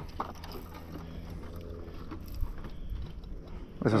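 Quiet ambience on a small fishing boat: a low steady rumble, with a faint hum about one to two seconds in and a soft knock about two and a half seconds in.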